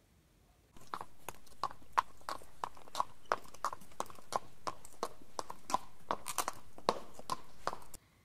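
Horse hooves walking, a steady clip-clop of about three to four hoofbeats a second: a dubbed sound effect over a faint hiss that starts abruptly about a second in and cuts off suddenly near the end.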